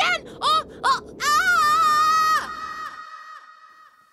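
High-pitched cartoon voices calling out in a quick run of short rising-and-falling cries, then one long drawn-out call about a second in that cuts off and rings on with an echo, fading away by about three seconds.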